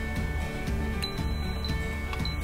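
Instant Pot Duo Gourmet electric pressure cooker giving a short high beep about halfway through as it starts its pressure-cook program, over steady background music.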